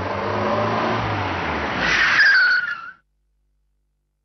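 Car engine running with tyre noise on paving, then a falling squeal of tyres about two seconds in as the car brakes to a stop. The sound cuts off abruptly about a second later.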